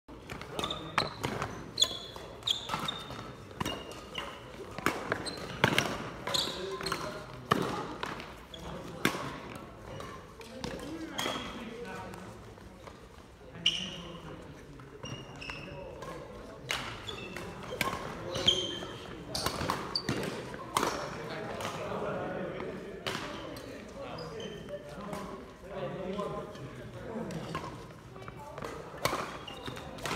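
Badminton doubles play: sharp racket strikes on the shuttlecock, roughly one a second during rallies, with shoes squeaking on the wooden court floor in a large, echoing hall. The strikes thin out for a few seconds in the middle, between points.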